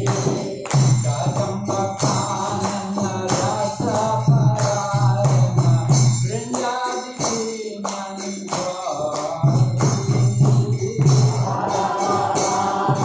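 Devotional chanting: singing voices over steady, rhythmic metallic jingling percussion.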